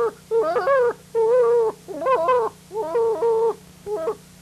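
A baby crying in a run of short wails, each about half a second long, with a steady low hum from the old soundtrack underneath.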